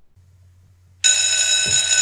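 Electric school bell ringing steadily, starting suddenly about a second in after a near-silent pause.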